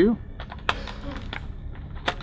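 Sharp plastic clicks and handling of a Giro Switchblade helmet's removable chinbar being unlatched and worked free by hand: several irregular clicks, the loudest about two-thirds of a second in.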